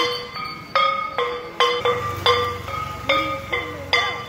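Two hanging metal gongs (temple plate gongs) struck by hand with a beater in a steady rhythm, about two strikes a second, each ringing on with a clear metallic tone that dies away before the next.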